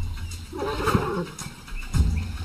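African elephant giving one short, harsh call about half a second in, lasting under a second, over a low rumble.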